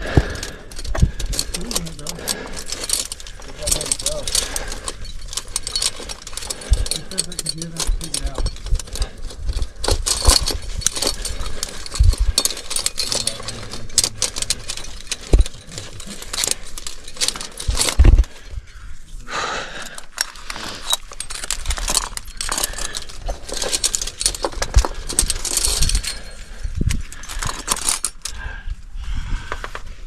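Climbing rack of cams and carabiners jangling and clinking against each other as the climber moves, with scattered knocks throughout.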